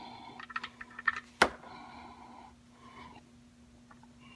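Hyundai transmission drain plug being spun out by hand: a run of small metallic clicks and rattles, with one sharp click about a second and a half in, as the plug comes free and fluid starts draining into the pan.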